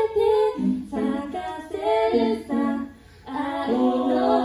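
An a cappella group of five singers singing in harmony into handheld microphones, with female voices prominent. The voices break off briefly about three seconds in, then come back in together.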